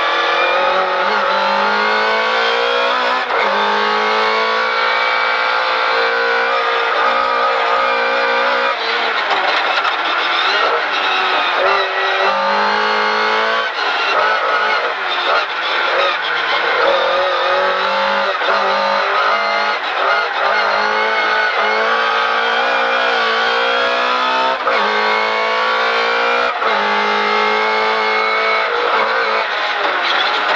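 Lada VFTS race car's fully forged 1.6-litre four-cylinder engine under hard throttle, heard from inside the cockpit. It climbs in pitch through each gear and drops at every shift, again and again.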